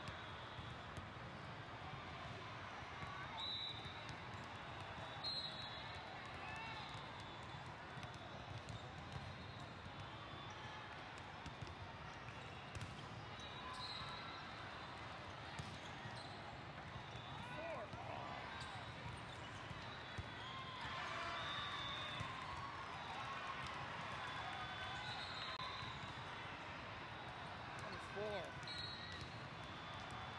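Din of a large hall full of volleyball courts: many voices talking and calling at once, with scattered sharp knocks of volleyballs being hit and bouncing. Voices rise and carry more in the last third.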